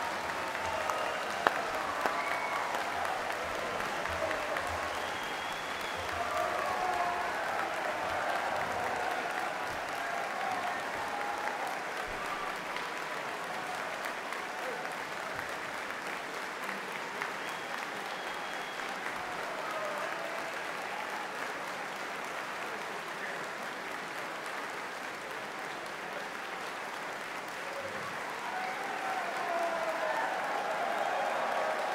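Large audience applauding steadily, with scattered cheering voices over the clapping; the applause swells again near the end.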